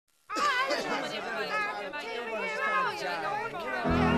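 Several voices talking over one another, indistinct chatter, starting just after the opening silence. Just before the end the band comes in with steady held notes and the record's music begins.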